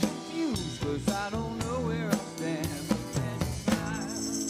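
Live rock band playing an instrumental passage: drum kit beats under an electric guitar lead line that bends and wavers in pitch, over a steady low bass part.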